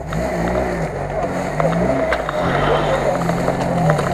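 Daihatsu Feroza's engine revving up and down again and again under load while the SUV is bogged in deep swamp mud, with its tyres churning.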